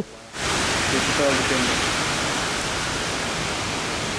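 Heavy rain pouring down on a wet street with wind: a steady, loud hiss that comes in about half a second in.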